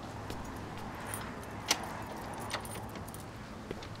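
Keys jangling at a front door with light metallic clicks, one sharper click a little before halfway, over a low steady background hum.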